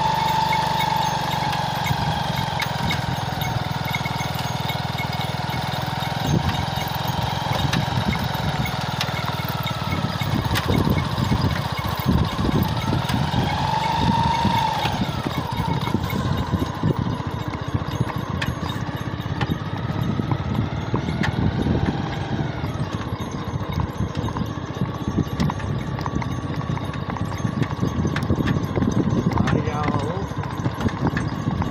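Motorcycle engine running at a steady road speed, with wind buffeting the microphone.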